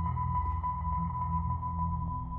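Ambient film-score drone: a steady high tone held over a low, pulsing rumble.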